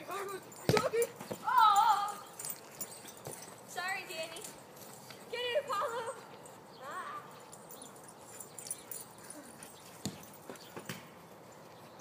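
A dog whining several times in short, high, wavering calls, with a sharp knock under a second in and a couple of fainter knocks near the end.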